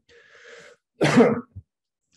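A man coughs once, sharply, about a second in, after a faint breath.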